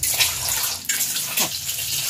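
Whole peeled boiled eggs sizzling in hot oil in a steel kadai, a steady hiss of frying.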